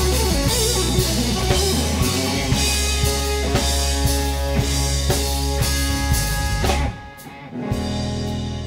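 Live blues-rock band: a Stratocaster-style electric guitar playing lead over bass and a drum kit keeping a steady beat. The band cuts out together for a short break about seven seconds in, then comes back in with held guitar notes.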